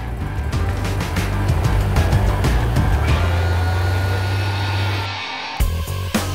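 Gator-Tail 37 hp EFI surface-drive mud motor running steadily under way, with background music over it.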